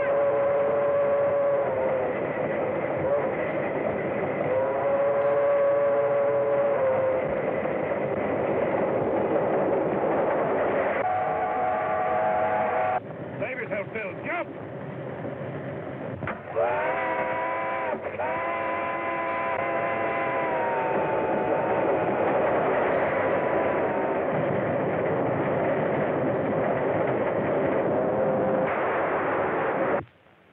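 Steam train running at speed with steady noise, broken by several long steam-whistle blasts held two to four seconds each; the longest comes up rising in pitch about halfway through. The sound drops back briefly just before it.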